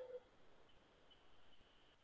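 Near silence: faint room tone, with a very faint thin high tone in the middle.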